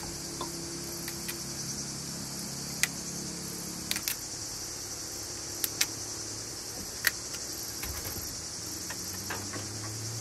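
A steady high chorus of chirping crickets, broken by a handful of sharp snaps and clicks as broccoli florets are broken off the head by hand and dropped into a cooking pot.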